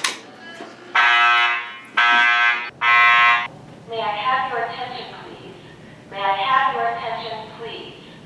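School fire alarm set off at a pull station with a sharp click, then the alarm sounds three loud blasts in quick succession. About four seconds in, a recorded voice evacuation announcement starts over the alarm speakers.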